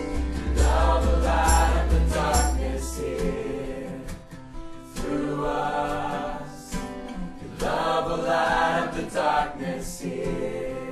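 Christian worship song with a group of voices singing. The heavy bass drops out about three seconds in, leaving the voices.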